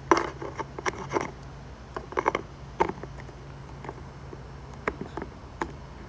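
Clear plastic lens cover of a car's door step light being handled and fitted into its housing: irregular light clicks, taps and scrapes of plastic on plastic, over a faint steady low hum.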